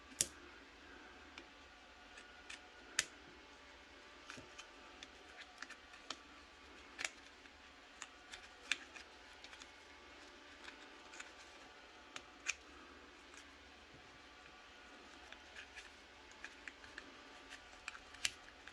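Scattered small plastic clicks and taps at irregular intervals as a plastic phone clamp is handled and fitted onto a flexible tripod's ball head. The sharpest clicks come right at the start and a few more spread through, around three, seven, nine and twelve seconds in.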